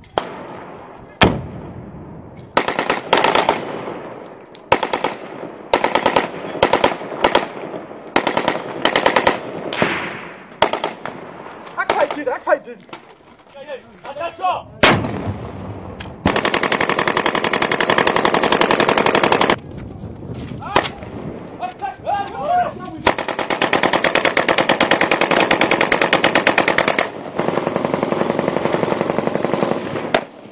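Automatic weapons fire at close range: single shots and short bursts through the first half, then two long sustained bursts of rapid fire, about three and four seconds long, in the second half, with more bursts near the end.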